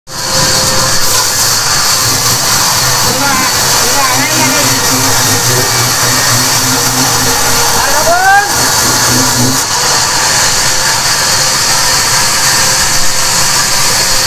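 Large vertical band saw running steadily, its blade cutting lengthwise through a thick hardwood slab, with a loud, constant hiss and a steady hum.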